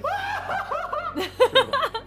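A woman laughing: a drawn-out voiced laugh, then a run of short quick bursts of laughter in the second half.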